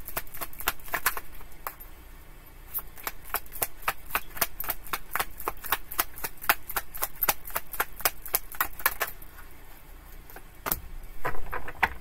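A deck of tarot cards being shuffled by hand: a rapid, even run of light card clicks, about five or six a second, that thins out after about nine seconds, followed by a few louder taps near the end.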